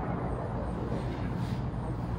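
Steady low background rumble with a faint hiss and no clear event, ambient noise of the kind a field recording picks up.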